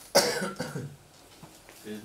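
A person coughing: one loud, harsh cough just after the start that dies away within about a second, then a smaller cough near the end.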